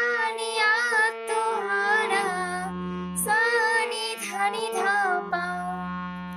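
Harmonium playing a melody in held, steady reed notes that step from one pitch to the next, with a voice singing the same line along with it in phrases with vibrato.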